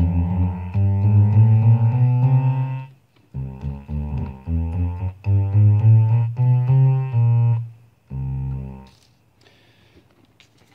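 Krueger String Bass, a 13-note analog bass synthesizer, played on its own small keyboard through a guitar amplifier. A string of low bass notes breaks off about three seconds in, a second string follows, and one short note sounds near the end.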